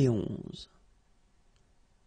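Speech only: a voice finishing the French number 'soixante et onze' (seventy-one), the word ending a little over half a second in.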